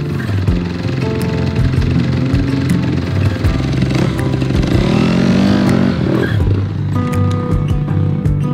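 Background music with a four-stroke Kawasaki motocross bike's engine revving underneath, its pitch rising and falling about halfway through.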